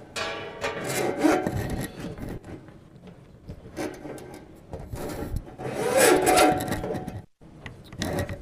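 Close rubbing and scraping handling noise on a microphone, in two bouts: one early and a louder one between about five and seven seconds in, cutting off suddenly just after.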